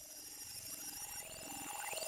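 Electronic sound-effects interlude fading in: short stepping pitched beeps over a steady high tone, faint at first and growing louder, with sweeping rising and falling pitch glides starting near the end.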